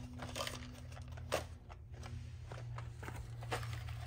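Cardboard boxes and a clear plastic package rustling and clicking as they are pulled from a shelf and handled, with scattered light clicks and one sharper click about a second and a half in. A steady low hum runs underneath.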